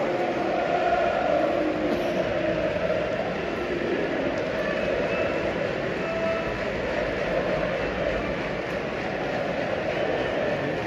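Football stadium crowd: a steady din from thousands of supporters, with chanting heard over it in the first two seconds or so.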